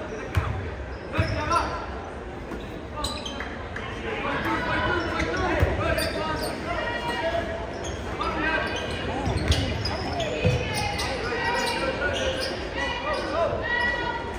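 Basketball dribbled on a hardwood gym floor, its bounces echoing in the large hall, with the voices of players and spectators going on throughout.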